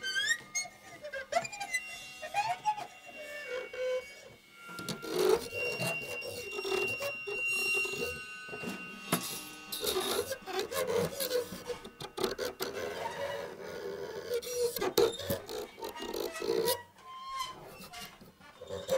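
Free-improvised percussion on drums and cymbals with live electronics: scattered taps and clicks, scraping and rubbing on drumheads and cymbals, and squeaky pitch glides in the first few seconds. A denser scraping texture runs from about five seconds in until near the end.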